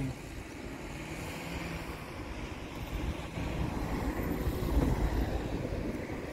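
Wind buffeting the microphone outdoors: a rumbling rush that grows stronger about halfway through.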